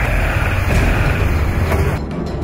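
Motorcycle engine running loudly, a low rumble with a hiss over it, stopping suddenly at the end.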